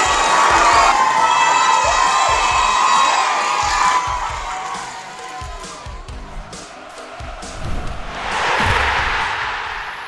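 A group of children cheering and shouting excitedly, dying away after about four seconds. Near the end a short swell of rushing noise rises and fades.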